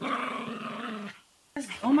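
A small dog growling for about a second as two small dogs scuffle.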